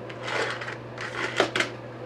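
Small parts and wires being handled on a workbench: two short bursts of rustling and clicking, the second with a sharp click about one and a half seconds in, over a steady low electrical hum.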